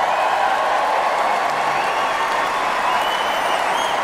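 Large stadium crowd cheering and applauding, a loud, sustained mass of clapping and voices, with a few high whistles near the end.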